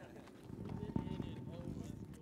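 Faint, distant talking voices with a few scattered knocks, over a low noisy rumble that grows about half a second in.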